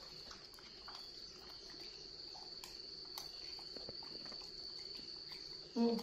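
Crickets trilling steadily in a thin, high tone, with a few faint clinks of a spoon against ceramic bowls.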